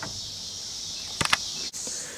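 Steady high-pitched chirring of insects, with a couple of short clicks a little over a second in.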